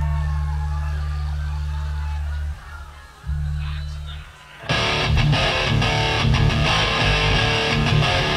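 Live heavy rock: a held low bass guitar note, broken off briefly and struck again, then the full band comes in with drums and distorted guitar about four and a half seconds in.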